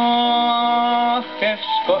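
A music hall comic song with orchestra, played from a Columbia 78 rpm record on a gramophone. A long held note lasts a little over a second. Then short quick phrases lead back into the chorus.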